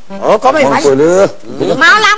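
A man's loud, wordless vocal cries with pitch sliding up and down, one long cry followed by another starting near the end.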